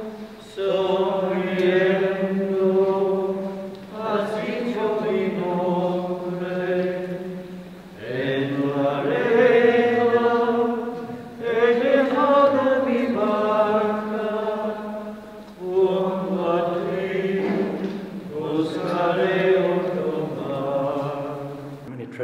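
Slow sung hymn in six phrases, each about three to four seconds long, with long held notes and short breaks for breath between them.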